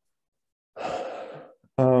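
A man sighs: a breathy exhale lasting under a second, about three-quarters of a second in. Near the end he starts to speak with an 'um'.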